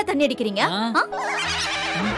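About a second of a loud, wavering voice swooping up and down in pitch, whinny-like, followed by a swell of background music with a shimmering wash.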